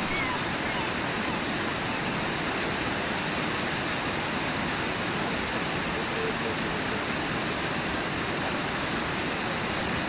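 Brooks Falls, a low river waterfall, and the rapids below it rushing steadily, with no let-up.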